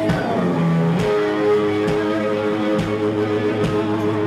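Rock band playing, led by a Telecaster-style electric guitar holding sustained chords and notes, with a sharp hit about once a second keeping a steady beat.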